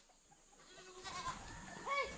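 Goats bleating faintly: a soft short call about a second in and a louder, rising one near the end.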